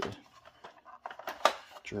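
Light clicks and taps of hard plastic toy parts being handled, with a couple of sharper clicks about a second and a half in.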